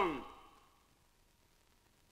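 A man's loud declaiming voice ends a line of verse on a falling syllable that dies away within about half a second, then near silence.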